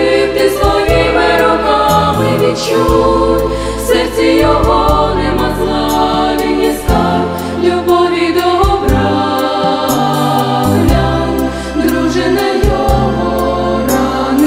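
Female vocal ensemble of six singing a Christian song in close harmony through microphones, with a low bass part underneath that changes in blocks.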